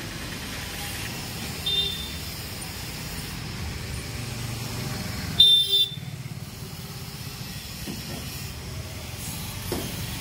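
Steady street and engine rumble, with a short vehicle horn toot about two seconds in and a louder double honk just past halfway.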